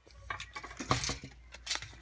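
A few light clicks and clinks of small hard plastic toys being handled, with two louder knocks about a second in and near the end.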